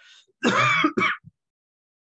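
A person clearing their throat: a loud push about half a second in, then a second, shorter one.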